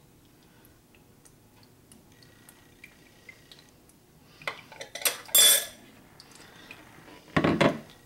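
Kitchenware being handled: a few sharp clinks of metal and glass about five seconds in, then a duller, heavier knock near the end as a glass measuring jug is set down on the tiled counter.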